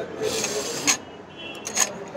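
Cold coffee being sucked up through a drinking straw: a raspy sucking sound for most of the first second, ending in a sharp click, then a shorter one near the end.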